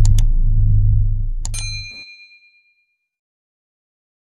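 Subscribe-button sound effects: two quick mouse clicks, then about a second and a half in a bright notification-bell ding that rings out briefly, over a deep rumble that fades away.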